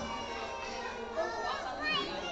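Toddlers playing and adults talking in a large gym hall: many overlapping voices, with a child's high-pitched voice standing out twice in the second half.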